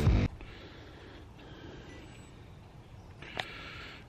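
Electronic intro music that cuts off abruptly just after the start, followed by a faint, steady background hiss with a single click near the end.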